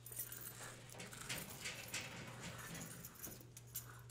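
A bunch of keys on a key ring jingling in a hand as short, irregular clinks and rustles, over a steady low hum.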